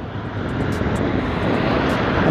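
Steady rush of wind on the microphone and engine noise from a motor scooter riding along a road.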